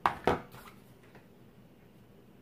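Two sharp hard clacks about a third of a second apart as the flat iron is picked up and closed onto a section of hair, then only faint room noise.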